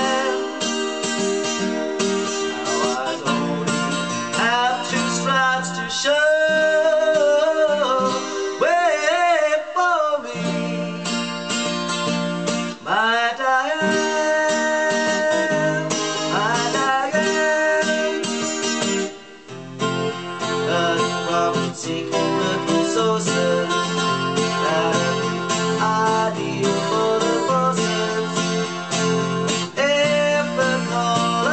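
A man singing to his own strummed acoustic guitar, a solo acoustic cover song. The playing breaks off briefly a little under two-thirds of the way through, then the strumming picks up again.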